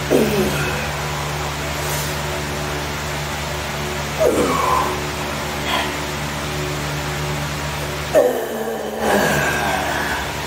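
A man groaning with effort on dumbbell curl reps: three short groans that fall in pitch, about four seconds apart, over a steady hum.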